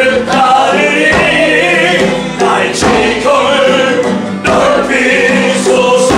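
A group singing a gospel-style worship song together, with musical accompaniment.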